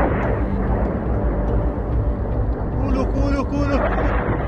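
A loud, steady rumbling roar, with people's voices calling out briefly about three seconds in.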